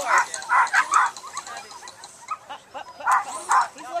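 A dog barking: four quick barks in the first second, then two more about three seconds in.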